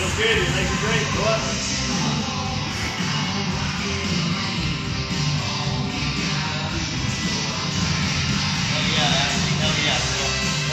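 Music playing steadily throughout, with a voice heard over it at times.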